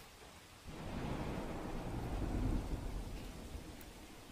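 A rumble of thunder with rain, starting about a second in, swelling, then fading away near the end.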